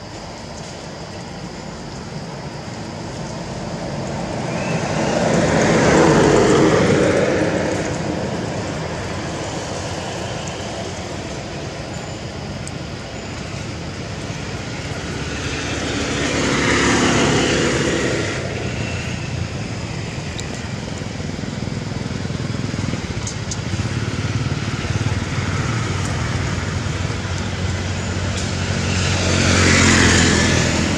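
Motor vehicles passing by three times, each swelling and then fading over a few seconds, over a steady background of traffic noise.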